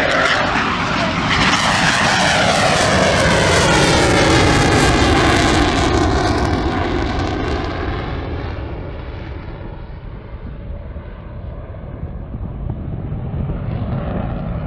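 Su-22 Fitter fighter-bomber's AL-21F-3 afterburning turbojet on a low pass: loud jet noise with a sweeping, phasing sound that builds to its peak around four to six seconds in, then fades away from about eight seconds as the jet climbs off into the distance.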